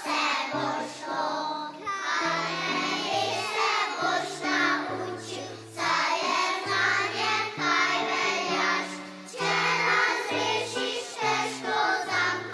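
A young children's choir singing a song in phrases, with instrumental accompaniment carrying a bass line underneath.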